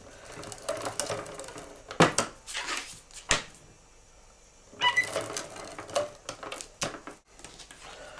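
Paper and a plastic compartment case being handled and pressed on a wooden table: scattered sharp clicks and rubbing, with a quieter stretch in the middle.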